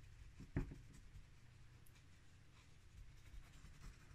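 Faint scratching of a dry paintbrush's bristles flicked across a textured terrain tile, with one light knock about half a second in.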